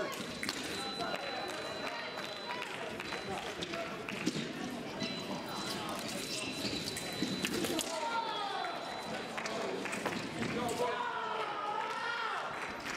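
Busy fencing competition hall: indistinct voices from around the venue, with frequent short knocks and clicks from bouts on neighbouring pistes.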